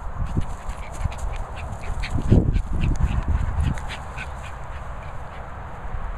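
A dog panting and huffing in short puffs, several a second, over a steady low rumble.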